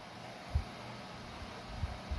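Dyson Cool tower fan running, a steady airflow hiss, with a soft low bump about half a second in and another near the end.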